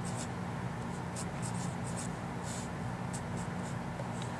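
Felt-tip marker writing on paper: a run of short, irregular scratchy strokes as numbers and symbols are written out. A steady low hum runs underneath.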